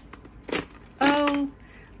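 A short knock and rustle of an object being handled on a desk about half a second in, followed by a brief held vocal sound from a woman.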